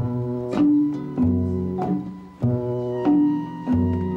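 Nylon-string classical guitar played fingerstyle, a slow, even pattern of plucked notes about every 0.6 seconds with low bass notes sounding under the higher strings.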